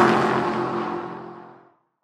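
Car pass-by whoosh sound effect on a logo animation: an engine note sweeps past, its pitch dropping as it goes by, then fades away about a second and a half in.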